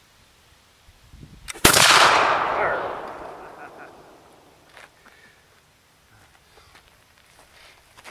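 A reproduction .70 caliber matchlock musket firing: a light click, then at once a single loud shot about one and a half seconds in, dying away over the next two seconds or so.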